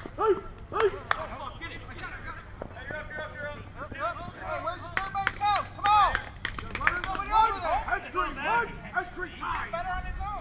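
Players' voices calling out and chattering across a softball field, with a few sharp smacks heard near the start and again about halfway through.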